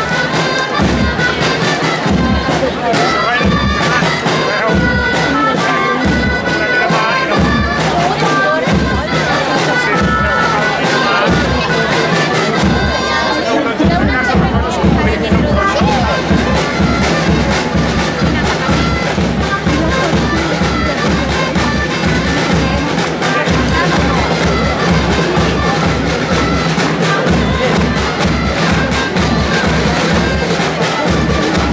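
Live Catalan giants' dance tune played by shrill double-reed pipes, typical gralles, over a steady drum beat, with the melody running on continuously.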